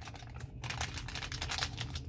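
A foil packet crinkling and clicking as it is handled, in a quick, irregular run of small crackles.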